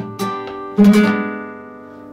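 Nylon-string flamenco guitar with a capo playing a bulería closing phrase (cierre) in E, por arriba: a sharp stroke and a plucked note, then a strummed chord about a second in, left ringing and fading.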